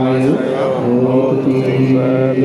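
A man chanting a Buddhist devotional chant in long, held notes with small steps in pitch.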